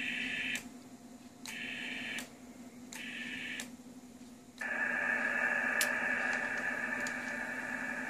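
HF transceiver's receiver hiss from its speaker, cutting out and back in several times with sharp clicks as the radio is switched from the 12-metre to the 10-metre band, then running steadily.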